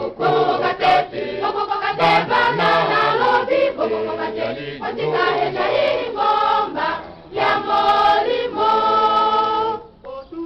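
A choir singing a worship song in harmony, closing on a long held chord near the end.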